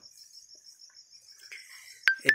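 A faint, steady, high-pitched insect trill pulsing evenly in the background.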